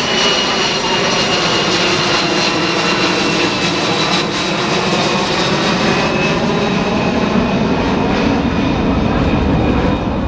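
Kawasaki C-1 military transport's twin JT8D turbofan engines running as the jet passes overhead and moves away: a steady loud rush with a high whine that slowly falls in pitch, the low rumble growing stronger in the second half.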